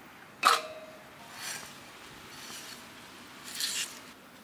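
A single sharp chop of a steel cleaver into a wooden chopping block about half a second in, with a short metallic ring from the blade. It is followed by soft rustling and handling noises as the raw chicken pieces are moved.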